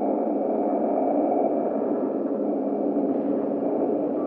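Dark ambient drone of an abandoned-building ambience: a steady, low hum with a faint high ringing tone over it in the first half, no creaks or knocks standing out.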